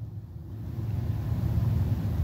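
Low rumble of a car heard from inside its cabin, growing steadily louder.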